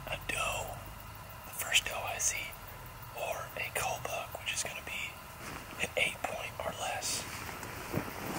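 A man whispering in short phrases with hissy consonants.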